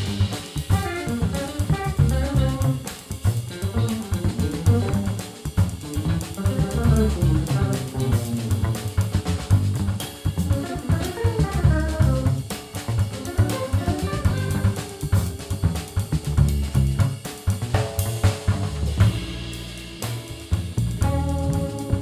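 Live jazz fusion played by a band of drum kit, upright double bass and electric guitars: a busy drum groove under quick runs of notes, with longer held notes coming in near the end.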